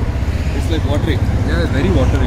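Faint voices of people talking over a steady low rumble.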